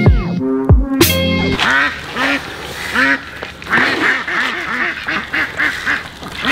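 Music with sharp drum hits for the first second or so, then ducks quacking over and over, several at once about four to five seconds in.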